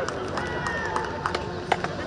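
Indistinct voices of players calling out across an outdoor football pitch, with a few short sharp knocks.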